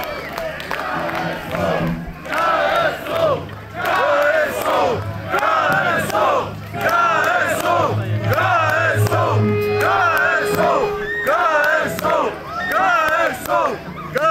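A rock concert crowd chanting and shouting in a steady rhythm, repeated phrase after phrase. A few low bass guitar notes and a held note sound under the chant about two-thirds of the way through.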